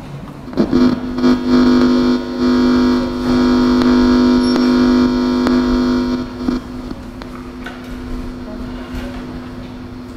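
Microphone feedback through the room's public-address system: a loud, steady, low howl with overtones that holds for about six seconds and then cuts off sharply.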